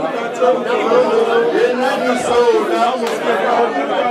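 Several voices talking over one another in a hubbub of chatter.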